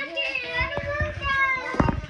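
A young girl's voice close to the microphone, making sing-song sounds with no clear words, with a few sharp knocks around the middle and near the end.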